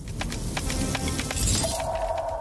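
Logo sting of music and sound effects: a loud rush of noise with deep bass and rapid sharp clicks, then a ringing tone held from about one and a half seconds in.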